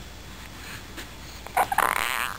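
A newborn baby's small squeaky vocal sounds: a few quick ones and then a slightly longer one, starting about one and a half seconds in after a quiet stretch.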